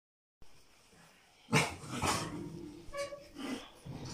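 An animal vocalising aggressively as it attacks another: a few loud, short outbursts starting about a second and a half in, then a shorter pitched cry near the end.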